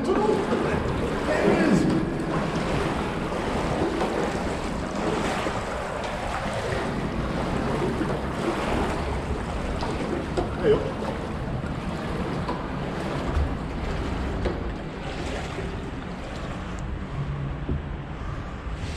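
Steady sloshing and splashing of someone wading through shallow water in a concrete culvert.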